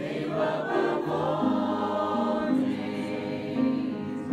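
A mixed choir of men's and women's voices singing a carol in harmony, with held notes moving from chord to chord.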